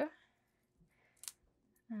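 Non-stick craft scissors giving a single sharp snip through a strip of foam tape about a second in, with faint sliding of the blades around it.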